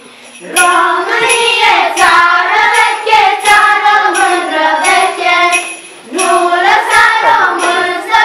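A group of children singing a song together in unison, with a short break for breath just after the start and another about six seconds in.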